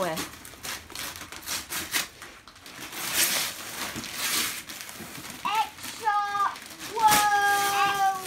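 Gift-wrapping paper being torn and crumpled by hand in a series of rustling rips. In the second half a child's drawn-out vocal sounds come in over the rustling.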